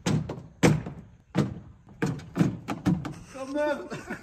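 A series of sharp knocks on the underside of the front of a Volvo 240, about one every half second and coming faster in the second half, as the broken front blade is banged back into place during a roadside repair.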